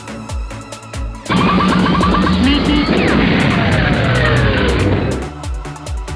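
Electronic dance music with a steady beat. About a second in, a much louder car sound effect cuts over it for about four seconds, with falling screeching tones of skidding tires, then the beat returns.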